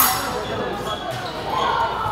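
Busy fencing-hall ambience, echoing in a large room, with background voices and a sharp knock at the very start.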